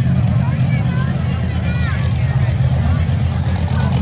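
Steady low engine rumble, with people talking over it.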